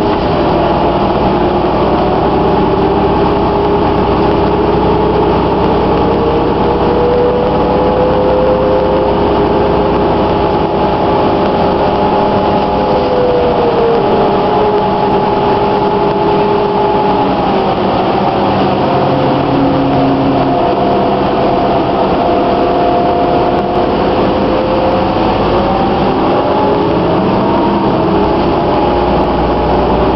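Inside a 2009 New Flyer DE41LF diesel-electric hybrid bus under way: the Cummins ISL diesel running together with the whine of the Allison EP hybrid drive. Several steady tones drift slowly down and up as the bus changes speed, dipping about halfway through and rising again near the end.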